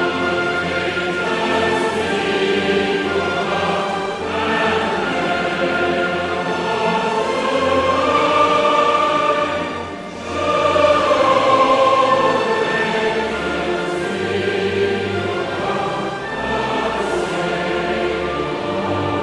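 Choral music: voices singing long held notes over an orchestral backing, dipping briefly about ten seconds in before swelling again.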